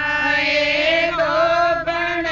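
A group of women singing a Haryanvi guru bhajan together in a chant-like style, with long held notes that slide between pitches and no instruments or beat.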